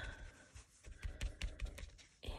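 Faint rubbing of a cloth rag wiping excess ink off embossed cardstock, with a few light clicks and taps in the second half.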